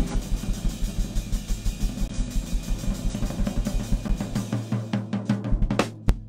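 Drum kit playing a steady pattern of kick and snare strokes, about five a second, that thickens into a fast roll in the last second and stops abruptly.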